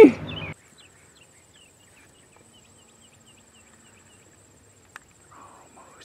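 Faint, steady high-pitched insect trill with scattered faint chirps, and a single click about five seconds in.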